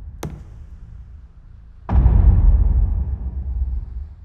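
A deep, heavily reverberant boom about two seconds in, ringing out slowly past the end. Before it, the tail of an earlier boom fades and a single sharp click sounds near the start.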